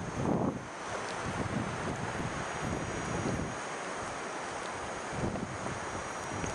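Wind buffeting the microphone: a steady rushing noise with gusty low rumble.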